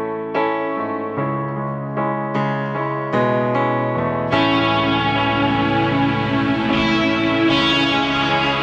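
Live song intro on electric piano: chords struck a little more than once a second, each ringing and fading. About four seconds in, the rest of the band comes in and the sound fills out.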